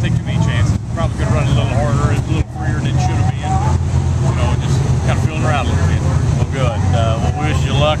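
A man's voice talking over a steady low drone of engine noise, typical of race cars running at the track.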